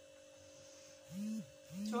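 A woman's voice making two short hummed sounds in the second half, each rising and falling in pitch, over a faint steady hum.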